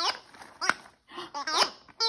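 A Christmas giggle ball toy being shaken, giving short warbling giggle sounds that slide down in pitch, one at the start and a cluster about one and a half seconds in, with a single click in between.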